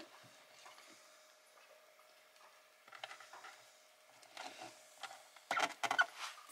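Faint clicks and handling noises from a hand wire crimping tool being worked on a cable at a battery terminal, with a quick run of sharper clicks near the end.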